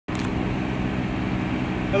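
Diesel engine running steadily at idle, a low even hum.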